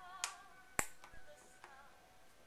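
Checker pieces being set down on a checkerboard: two sharp clicks about half a second apart, then a lighter one.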